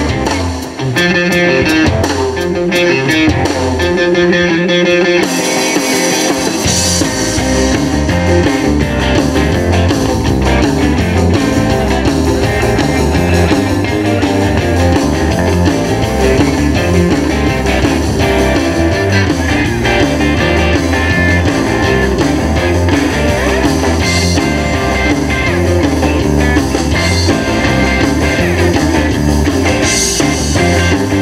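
Live rockabilly band playing an instrumental stretch: electric guitars over bass and drums. The bass and drums drop back for the first few seconds, then the full band comes back in about five seconds in and plays on steadily.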